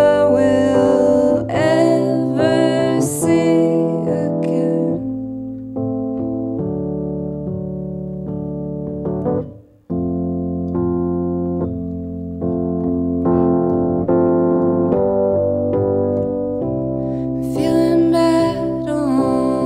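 Woman singing over held electric piano chords, then the electric piano playing alone in slow sustained chords, with a brief break about halfway. Her singing comes back near the end.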